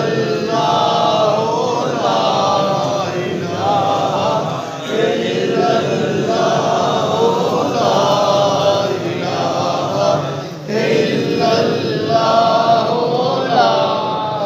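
A group of men chanting devotional phrases together in unison, in long phrases several seconds each with brief pauses between them.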